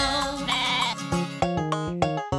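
A sheep bleating over bright children's background music.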